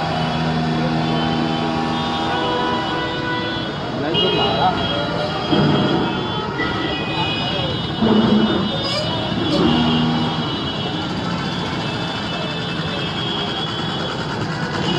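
Street crowd and road traffic: many people talking and calling out over running vehicles, with several long steady tones held for a second or more and a sharp rise in loudness about five and a half seconds in and again about eight seconds in.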